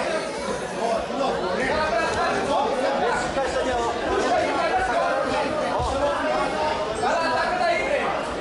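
Chatter of many overlapping voices in a large hall, with no one voice standing out, as spectators talk during a grappling match.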